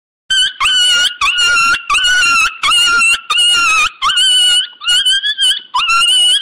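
An animal calling: a rapid run of about nine short, high-pitched calls, each held at a steady pitch, starting a moment in.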